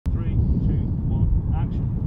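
Heavy, steady wind rumble buffeting the microphone outdoors, with short spoken calls of a countdown over it.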